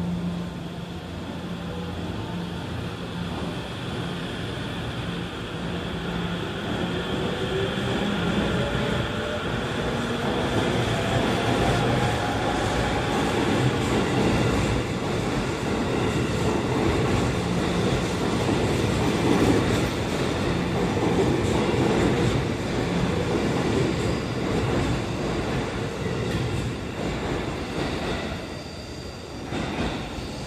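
E257 series electric train pulling out of the platform and gathering speed. Its motors give a whine that climbs in pitch, under growing wheel-on-rail running noise. The noise is loudest as the cars pass, then fades near the end.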